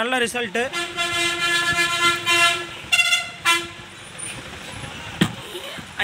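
A vehicle horn sounding twice: one long steady blast of about two seconds, then a short toot.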